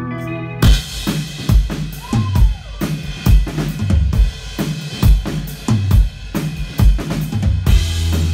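Live rock band starting a song: a held chord rings, then about half a second in the drum kit and electric guitars come in together, with a steady beat of kick drum and snare hits through a loud club PA.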